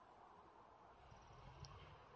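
Near silence: faint outdoor background with a steady, high-pitched insect buzz.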